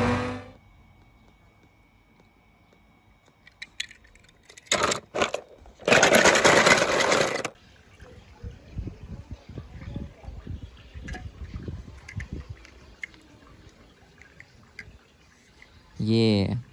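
Die-cast toy cars being handled and set down on a stone ledge: small clicks and knocks, with a loud rushing noise lasting about a second and a half about six seconds in.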